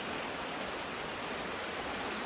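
A small beck, swollen with rainwater, rushing over and between stones: a steady, even rush of flowing water.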